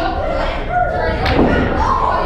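People talking, with one sharp thump a little past halfway through.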